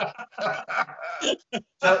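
Men laughing in short, broken bursts.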